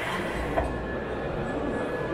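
Steady background noise of a busy exhibition hall, with a low rumble setting in shortly after the start and a faint steady high tone running through it.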